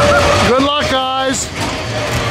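A person sneezes about halfway in, a voiced sneeze whose pitch rises and then holds for about half a second. Underneath is a steady fairground din with a low hum.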